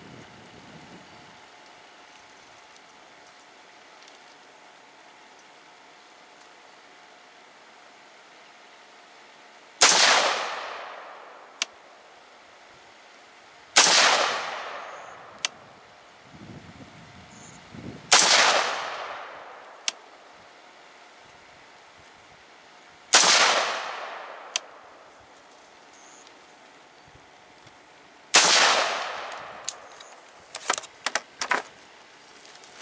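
Five single rifle shots from a 14.5-inch-barrelled Palmetto State Armory AR-15, fired slowly, four to five seconds apart, starting about ten seconds in. Each shot has an echo that dies away over a second or two, and a light click follows most shots.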